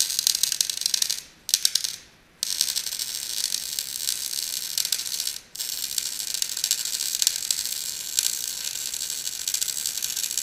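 Electric arc welding on steel: the arc crackles and sputters steadily as a bead is laid. It stops briefly about a second in, again near two seconds, and for a moment at about five and a half seconds.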